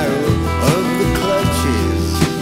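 Acoustic guitar strummed in a slow folk song, with a wavering, bending melody line carried over the chords.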